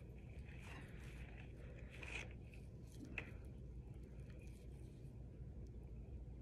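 Faint squishing and scraping of baking-soda-and-shampoo slime being stretched and pulled apart in the hands, over a low steady hum, with a small soft tick about three seconds in.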